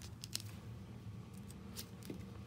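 Silver duct tape crinkling and crackling faintly as it is pressed and wrapped around a PVC pipe, with a few short crackles about a quarter second in and again near the end.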